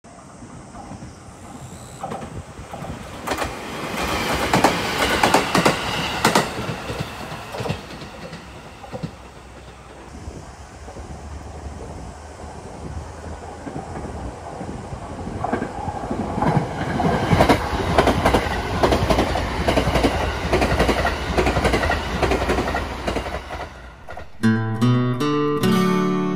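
An electric train running past on the tracks, its wheels clattering over the rail joints above a low rumble. The sound swells a few seconds in, eases off, then builds again through the second half as the train comes close.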